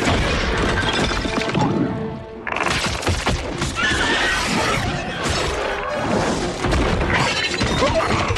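Film fight soundtrack: a dense music score under crashing, shattering impacts and shrill creature cries, with a brief lull about two seconds in before the crashes come back loud.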